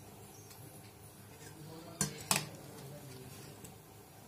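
Steel ladle stirring a thick dal curry in a stainless steel kadai, knocking twice against the pan about two seconds in, the two clinks about a third of a second apart.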